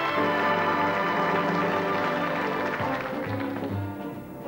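Orchestral music. About three seconds in it thins out, leaving a bass that plays a steady beat.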